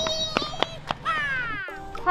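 Background music with a few sharp clicks and a high wavering tone, then a long falling glide. The music cuts off abruptly shortly before the end.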